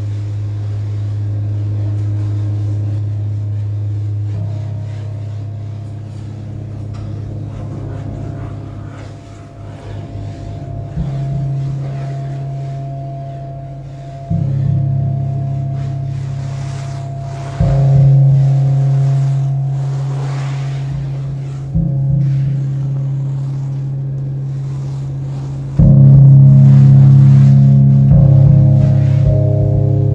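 Electric guitar played through an amplifier in free improvisation: low, sustained droning notes that ring on. A new note is struck abruptly every few seconds, each step a little higher and louder, and the loudest comes near the end.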